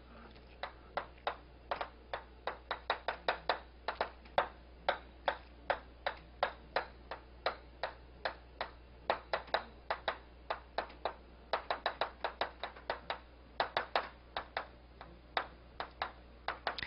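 Chalk on a chalkboard while writing: an irregular run of sharp taps and clicks, several a second with short pauses, over a low steady hum.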